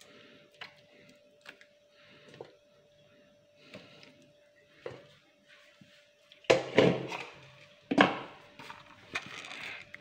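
Raw chicken pieces dropped into a kadai of water on the stove: a few faint clinks, then two louder splashes about a second and a half apart, each trailing off, over a faint steady hum.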